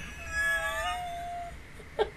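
A cat meowing once, a single drawn-out call lasting about a second.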